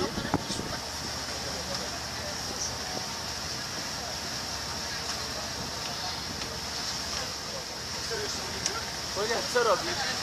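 Steady running noise of a moving tour boat: a low engine hum with wind and water rushing past. People's voices come in briefly near the end.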